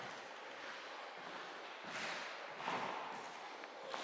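Quiet room noise with faint shuffling movement and a couple of soft swells about two seconds in.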